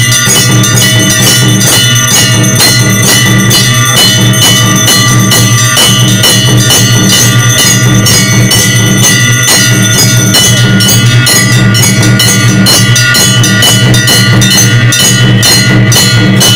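Loud, continuous ringing of temple bells over fast, regular drumbeats, the music of aarti worship.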